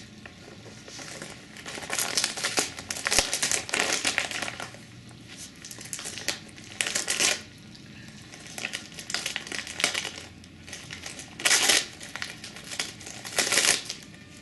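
Gift-wrapping paper crinkling in irregular bursts as a Chihuahua noses and pulls at a wrapped present. The busiest spells come a couple of seconds in and again near the end.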